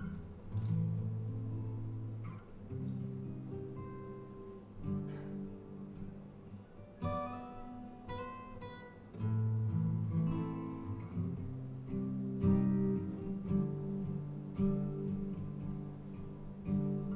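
Solo steel-string acoustic guitar, fingerpicked through a slow instrumental passage of ringing, held notes, with a brighter run of higher notes about seven seconds in.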